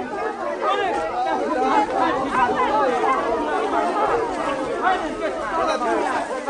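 Many people talking at once: a steady babble of overlapping adult voices from a crowd on foot.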